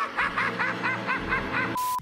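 The cartoon Joker's laugh: a quick run of about ten "ha" notes, roughly six a second, ending in a short steady tone near the end.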